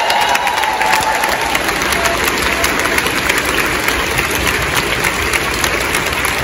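A large auditorium audience applauding steadily. A single voice holds a high cheer over the first second or so.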